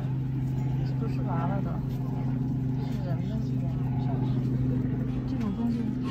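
Steady low mechanical hum, like an engine running nearby, with faint voices.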